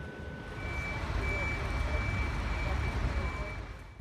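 Heavy construction crane working, its engine giving a steady low rumble that grows louder about half a second in. A thin, steady high tone sounds over it from about half a second in until shortly before the end.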